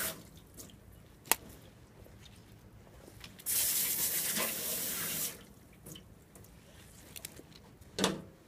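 Water running from a tap to rinse off a fish-cleaning table: a gush that stops right at the start and another of about two seconds from midway. A single sharp click about a second in.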